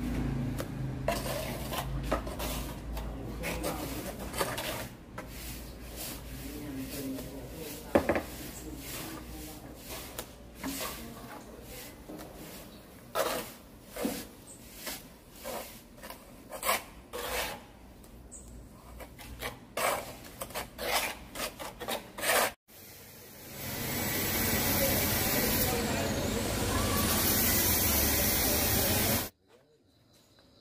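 Pointed steel trowel scraping and smoothing wet cement mortar along the top of a low concrete wall in its form, in many quick strokes with irregular gaps. About three quarters of the way through, after a sudden cut, a steady, louder noise takes over for several seconds.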